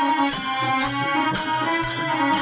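Devotional bhajan music: a harmonium plays steady held notes while a row of small brass hand cymbals (taal) are clashed together in an even rhythm, about two strikes a second.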